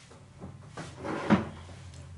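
A man sitting down on a white plastic chair: three short knocks and shuffles of the chair and his clothing, the loudest about a second and a half in.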